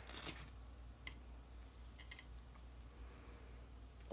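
Faint rustle of cloth as a plush bear's vest is pulled off, with a brief burst at the start and a few faint clicks afterwards, over a low steady hum.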